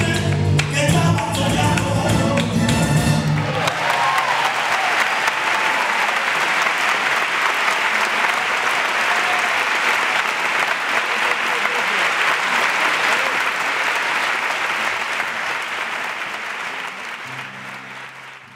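Live flamenco music with singing ends about three and a half seconds in. A theatre audience then applauds steadily, and the applause fades out near the end.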